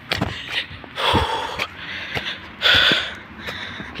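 A man breathing hard while climbing a slope, two loud breaths about a second in and near three seconds, with footfalls knocking on loose gravelly ground.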